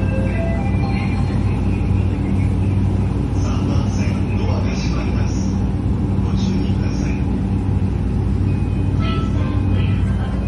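Interior of a JR Yamanote Line commuter train: a steady low hum from the train's motors and running gear, with faint passenger voices over it.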